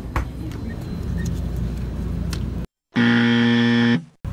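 Store ambience with a steady low hum, cut off abruptly, then a loud, steady buzzer sound effect for about the last second, a 'wrong answer' style buzz marking that the sought-after milk is sold out.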